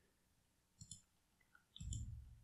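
Two faint computer mouse clicks about a second apart over near silence. The second click is slightly louder.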